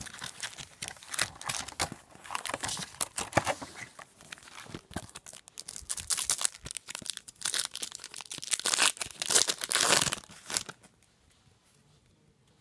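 Foil wrappers of Garbage Pail Kids Chrome trading-card packs crinkling and tearing as they are opened by hand, a dense run of irregular rustles that is loudest just before it stops near the end.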